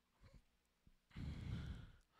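A man sighs, one long breath out lasting under a second, starting about a second in. It is preceded by a few faint clicks.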